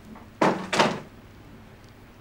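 A wooden interior door being pushed shut: two sharp knocks in quick succession about half a second in, as the door meets its frame and latches.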